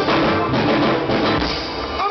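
Live band playing a funk song: drum kit, electric guitar and electric bass.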